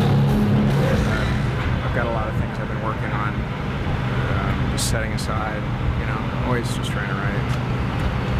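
Rock music ending about a second in, followed by indistinct voices over a steady low hum.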